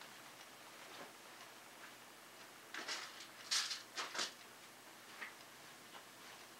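Quiet room, then a cluster of faint clicks and light rattles about three to four seconds in, and one more click near five seconds: someone rummaging through small hardware for a screw.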